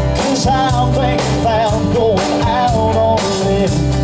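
Live band music with a steady beat: a man singing a wavering melody over acoustic guitar, keyboard and drum kit.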